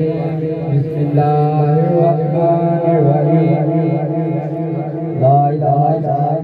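A man's voice chanting a slow melodic line through a microphone and loudspeaker, with long wavering held notes over a steady low hum. It grows louder about five seconds in.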